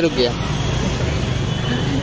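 Street traffic noise: a steady low rumble of motorcycle and vehicle engines running at low speed, with no single event standing out.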